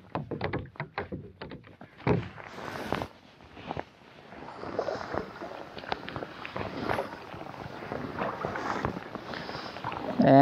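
Wide-bladed kayak paddle stroking through calm water, the blade dipping in and pulling back with splashing and dripping that swells and fades with each stroke. A quick run of small clicks and taps comes in the first two seconds.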